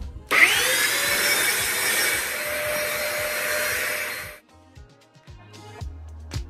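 Small corded handheld vacuum cleaner starting up with a rising whine, then running steadily for about four seconds as it sucks powder off a fabric couch cushion, and cutting off suddenly.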